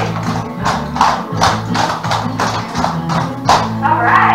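Recorded song with a steady beat, over it the sharp metal clicks of several dancers' clogging taps striking the floor in rhythm.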